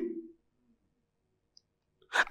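The tail of a man's spoken word fades out, then a pause of near silence broken only by one faint, short click about a second and a half in.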